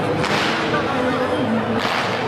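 Two sharp swishes from a Chen-style taiji double-sword performer's fast movements, one just after the start and one near the end, over background chatter in a large hall.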